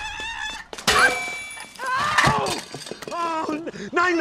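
A sharp crash with shattering glass about a second in, among high wordless screams and cries.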